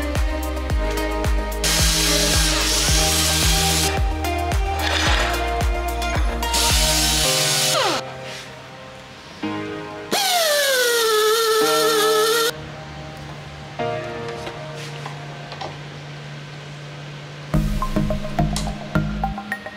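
Background music, with a pneumatic tapping arm whining as it cuts threads in a steel plate about ten seconds in: its pitch falls over about two seconds, then holds steady until it stops suddenly. Two long bursts of hiss come earlier.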